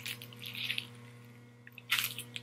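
Close-up eating sounds of a lettuce-wrapped burger being bitten and chewed: soft wet mouth sounds, then a sharp crunch of lettuce near the end.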